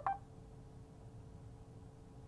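A single short electronic beep from the Mercedes MBUX infotainment system right at the start, followed by a faint steady hum in the quiet car cabin while the voice command is processed.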